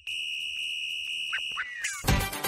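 A steady, high-pitched electronic beep held for about a second and a half. A few short sliding chirps follow near the end.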